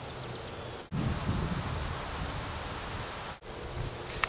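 Steady, high-pitched drone of insects in summer grass, breaking off for an instant twice, with a low wind rumble on the microphone in the middle stretch.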